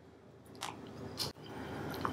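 Quiet room tone with a faint steady hum, broken by two short faint clicks about half a second and a second in.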